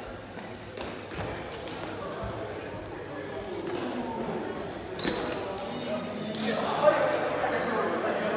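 Knocks and footfalls of a foot-shuttlecock rally echoing in a large sports hall, mixed with players' and onlookers' voices. A sharp knock with a short high ring comes about five seconds in, and the voices grow louder near the end.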